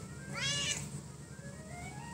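A cat meowing once, briefly, about half a second in; the call rises then falls in pitch. Background music with a slow rising tone plays underneath.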